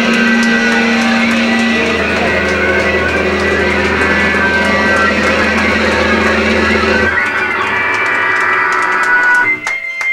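Live band playing loud electric guitar and bass in a sustained wall of sound; the low end drops out about seven seconds in, and near the end the playing breaks off, leaving one high steady tone.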